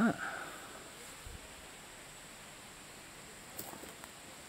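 Quiet woodland ambience with a faint, brief voice-like sound near the end, which the walker takes for distant people's voices echoing from a path beyond the ridge.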